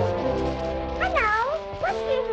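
Cartoon soundtrack music with steady held notes, joined by drawn-out meow-like cries that bend down and up in pitch, one about a second in and another starting near the end.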